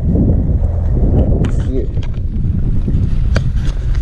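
Wind buffeting the microphone, a loud, uneven rumble, with several sharp clicks and knocks in the second half.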